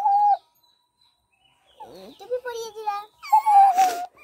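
A plush dancing-cactus toy's high-pitched song cuts off just after the start. After a short silence a child's voice sounds, rising in pitch at first, and near the end a high wavering voice comes again.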